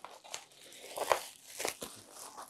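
Bubble wrap and packing crinkling and rustling in irregular bursts as a wrapped package is lifted out of a shipping box.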